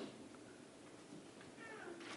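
Near silence: room tone, with a faint, brief squeak near the end.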